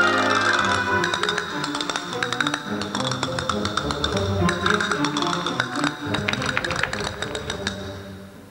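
Orchestra playing dance music. From about a second in, a rapid run of sharp percussive clicks rattles over it, and the music fades down at the very end.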